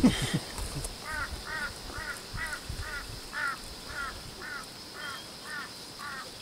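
A bird calling over and over, a short arched call repeated about twice a second, starting about a second in and running on evenly.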